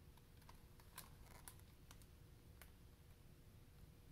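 Near silence with a few faint clicks and a light paper rustle about a second in, and one more click a little later, as a picture-book page is turned.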